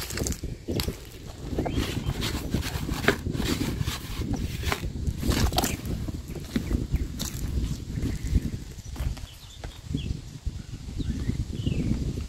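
A horse eating dried corn kernels off the ground, with irregular crunching as it chews. Wind rumbles on the microphone.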